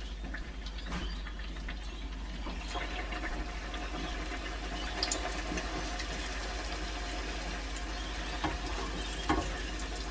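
Spring rolls deep-frying in hot oil in a pot, the oil sizzling and bubbling steadily with fine crackles. A few sharp clicks come in the second half as metal tongs turn the rolls.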